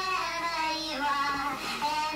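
Two men singing a melody together, holding each note for about half a second before moving to the next.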